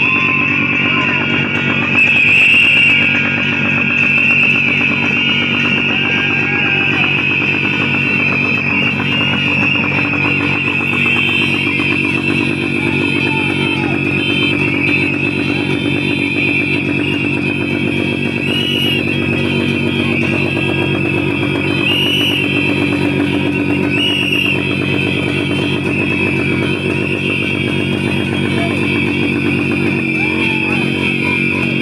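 Many whistles blown at once by a crowd, a continuous shrill whistling held without a break, with a low buzzing drone underneath.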